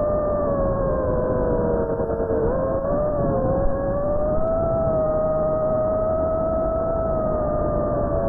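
Electric motors and propellers of a small FPV drone, heard from on board: a steady whine that dips in pitch about two and a half seconds in, then rises and holds as the throttle changes, over a low rushing noise.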